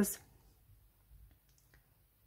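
Near silence with room tone and a few faint clicks about one and a half seconds in.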